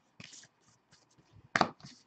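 A hand-held stack of glossy Panini Revolution trading cards being flipped through: a faint rustle of card sliding on card, then two sharp snaps as cards are flicked off the stack about a second and a half in.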